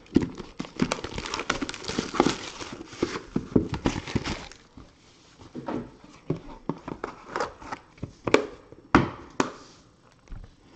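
Card-box packaging crinkling and rustling as a box is opened, dense for about the first four and a half seconds, then scattered clicks and knocks as the box and a plastic card holder are handled.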